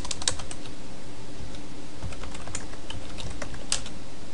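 Typing on a computer keyboard: a quick run of keystrokes in the first second, then a few scattered keys and one sharper click near the end.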